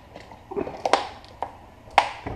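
Plastic cooking-oil bottle being handled and set down on the kitchen counter: a short scuffle and a few knocks, with the sharpest click near the end.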